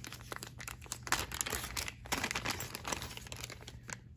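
Clear plastic bag crinkling and crackling in the hands as it is worked open and a cable is pulled out of it, a quick irregular run of crackles.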